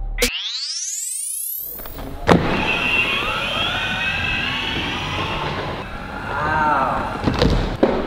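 A sharply rising whoosh-like sound effect as a beat cuts off. Then a Boosted Mini electric skateboard rolling across a hardwood floor: wheel noise with a wavering high motor whine that rises and falls with speed, and a single knock near the end.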